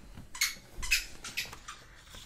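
Paper planner pages being handled and slid across a wooden tabletop, heard as a few short, sharp rustles and scrapes about half a second apart.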